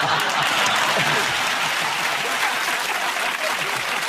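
Studio audience applauding, a dense, steady clapping that holds throughout.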